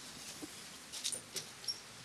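A few faint light clicks and two brief high squeaks from a black metal door's lever handle and latch being worked as the door is opened.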